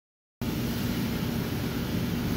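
Steady, loud machine-like noise in a shop: a hiss with a low hum beneath it, starting abruptly about half a second in.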